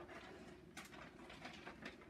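Near silence, with a few faint crinkles of a plastic bag of shredded cheese being handled, about a second in and again near the end.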